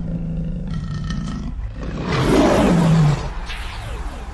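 A lion roar sound effect over a low rumble. It swells to its loudest between about two and three seconds in, then slides down in pitch and breaks off.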